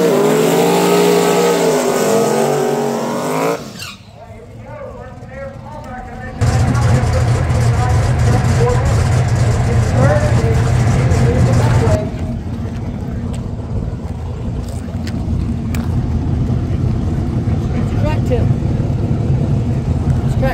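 Drag race car engine running loud and revving, with pitch rising and falling at first. About six seconds in it turns to a steady, loud low drone heard from inside the roll-caged cockpit, dropping somewhat in level after about twelve seconds.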